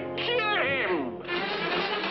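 A cartoon character's wailing cry that slides down from high to low in pitch, over held orchestral notes. The cry ends a little over a second in and the orchestral film score carries on.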